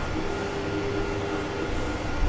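3D printer running: a steady hum and hiss with a few held tones, one of which drops in pitch over a second in, as its motors move.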